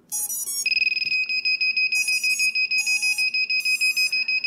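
A quadcopter powering up on first connection of its LiPo battery. It opens with a quick run of rising beeps as the ESCs initialise and twitch the motors. Then the flight controller's buzzer sounds a high-pitched beep in rapid pulses, a sign that the power-on test has passed without a short.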